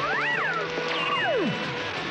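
Cartoon soundtrack: background music with two swooping pitch glides laid over it, the first rising and falling quickly, the second dropping steeply about a second in.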